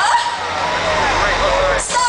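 Live concert sound from within the crowd: amplified vocals over a bass-heavy backing track through the PA, with crowd voices mixed in, dipping briefly near the end.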